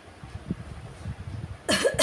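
A woman coughs once, short and sharp, near the end.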